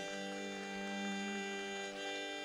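Steady drone of an electronic tanpura (shruti box) holding its tones unchanged, with a sustained low note joining just after the start.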